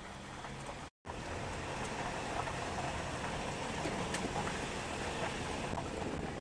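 Car running along a gravel road, heard inside the cabin: a steady rumble of engine and tyres on loose gravel. The sound cuts out completely for a moment about a second in, then carries on.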